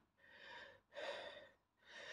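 Near silence broken by three faint, short breaths of a man, each under half a second.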